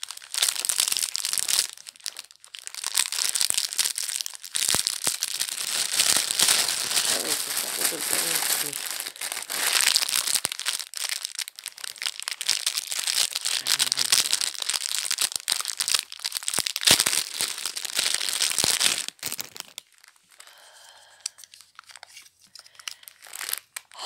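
Clear plastic packaging crinkling, crackling and tearing as it is handled and pulled open by hand, a long dense run that stops about 20 seconds in, leaving only faint rustles.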